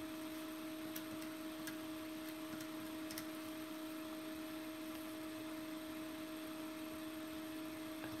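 A steady low electrical hum, with four faint ticks in the first few seconds from desk-calculator keys being pressed.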